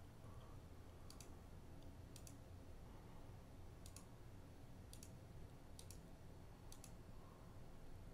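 About six faint computer mouse clicks, spaced roughly a second apart, several heard as quick press-and-release pairs, over a low steady hum.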